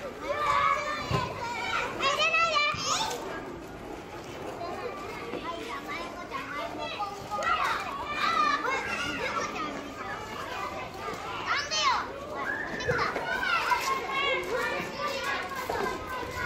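A crowd of children playing, many voices talking and shouting over one another, with a few high squeals.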